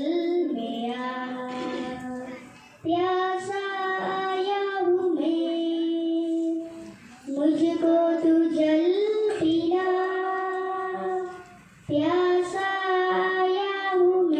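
A young girl singing a Hindi devotional song into a microphone. She sings in phrases of long held notes, with short breaths between phrases about three, seven and twelve seconds in.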